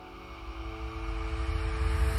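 Dark ambient soundtrack: a low rumble swelling steadily louder under a few held notes.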